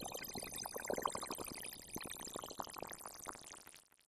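Absynth 5 sine tone run through its Aetherizer granular effect: a glitching stream of short grains with resonant, bandpass-filtered pitches locked to a minor-7 chord. The grains thin out and fade away near the end as the grain duration is turned down toward zero.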